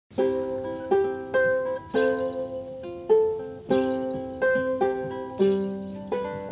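Plucked string instrument playing an unaccompanied introduction: notes and chords plucked about once or twice a second, each ringing and fading before the next.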